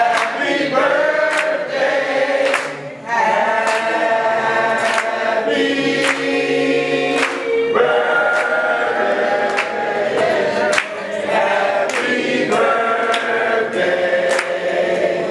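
A small group of women singing a birthday song together in choir style, with hand claps on the beat about once a second.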